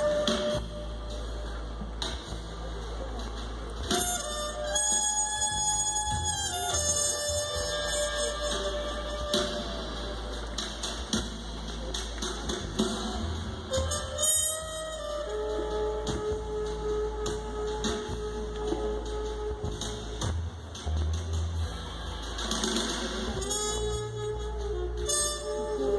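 Live music from an outdoor stage, heard from a distance, with long held melodic notes and slow glides between them.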